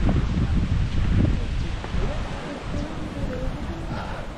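Wind buffeting the microphone, a low rumble that is strongest in the first half and eases after about two seconds, with faint voices in the background.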